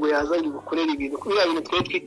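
Speech only: a person talking, in a raised, fairly high-pitched voice with short pauses.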